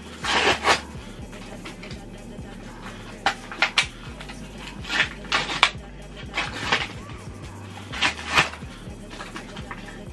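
Foil booster-pack wrapper crinkling and tearing open in about five short rustling bursts, over background music.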